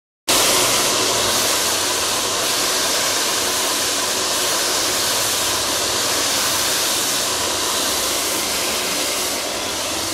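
Handheld hair dryer running steadily, a constant rush of air, as hair is blow-dried over a round brush.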